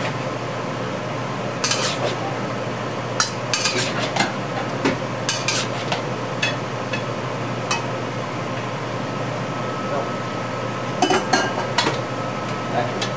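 Metal utensil scraping and clinking against a stainless steel wok as tofu, peas and shrimp are stirred, in irregular bursts that pause for a few seconds near the end before a last flurry. A steady hiss runs underneath.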